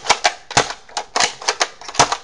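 Plastic bolt and mechanism of a Buzzbee Air Warriors Predator toy dart blaster being worked by hand: about five sharp plastic clicks and clacks spread over two seconds.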